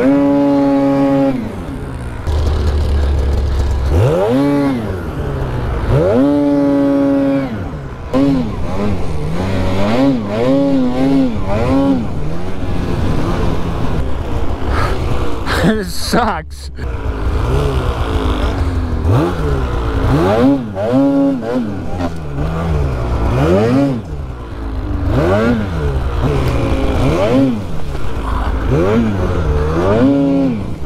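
Polaris 9R snowmobile's two-stroke twin revved in repeated rising and falling bursts as the sled is worked free from deep snow, then running hard through powder.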